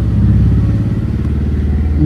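A motor vehicle engine running with a steady low hum.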